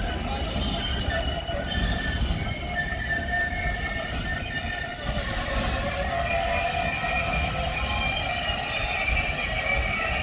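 Container freight train's flat wagons rolling past at close range, a continuous rumble of wheels on rail with a high, steady squeal over it.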